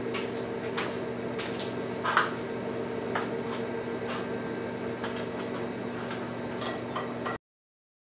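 Steady electrical hum with scattered light metallic clicks and knocks as hoist mounting hardware is handled and worked with a wrench. The sound cuts off abruptly near the end.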